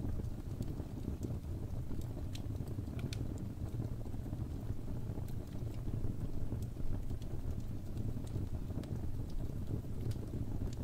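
Wood fire burning in a fireplace: irregular sharp crackles and pops over a steady low rumble.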